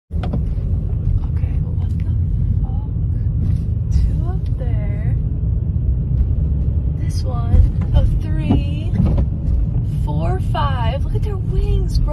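Steady low rumble of a car running, with a person's voice speaking or exclaiming several times over it.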